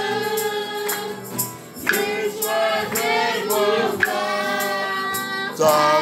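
Gospel worship song: several voices singing together over a steady percussion beat of about two strikes a second.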